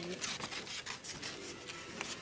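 Paper rustling and rubbing as a paper cutout doll is handled and slid over a sheet of paper, in short irregular scrapes.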